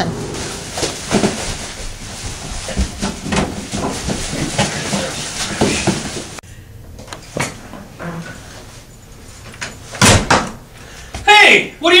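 Plastic garbage bag rustling with small knocks and clatters as things are handled and stuffed into it, then a single loud bang and a man's raised voice near the end.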